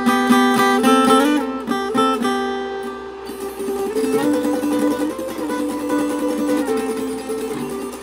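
Acoustic guitar playing two-note intervals, picked and left to ring: a few quick changes of notes in the first three seconds, then longer held pairs. With the G moved up an octave over the B, the intervals sound as sixths.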